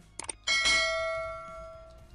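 A couple of quick clicks, then a single bell-like ding about half a second in that rings on and fades away over about a second and a half: the notification-bell sound effect of an animated subscribe button.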